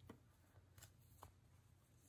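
Near silence, with a few faint soft clicks and rustles of a cloth face mask being handled and its elastic ear loop hooked over the ear.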